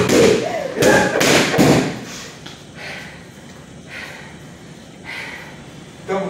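Boxing gloves punching focus mitts: a quick run of about four loud thuds in the first two seconds, then only a few faint knocks.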